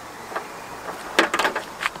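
An old car wiring harness being handled, giving a short run of sharp clicks and rattles a little over a second in.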